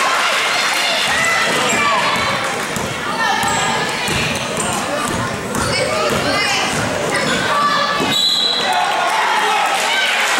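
Basketball bouncing on a hardwood gym floor during live play, under shouting voices of players and spectators echoing in a gymnasium.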